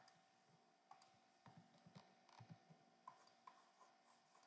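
Near silence with faint, scattered light clicks and soft taps from a computer drawing setup, over a faint steady hum.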